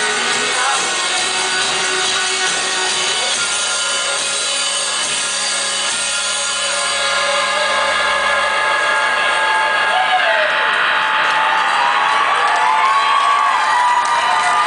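Electric guitar and band holding a sustained, ringing chord as a song ends. The low notes cut off about two-thirds of the way through, and the crowd starts cheering and whooping.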